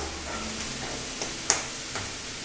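Onions, celery and mushrooms sizzling as they sauté in bacon fat in a stainless skillet, while chopped green bell pepper is tipped in from a glass bowl. A single sharp tap stands out about a second and a half in.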